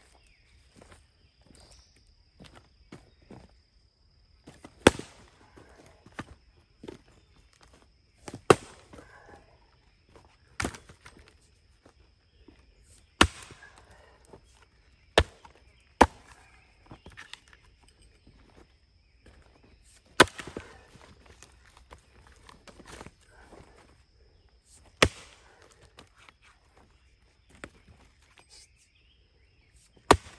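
Short-handled Arvika 5 Star axe splitting wood rounds set on the ground: about eight sharp strikes of the head into the wood, a few seconds apart, with softer knocks and rustling of the split pieces and leaf litter between.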